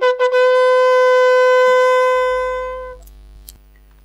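End of a news signature tune: a few short trumpet-like notes, then one long held brass note that fades out about three seconds in. A low mains hum remains after it.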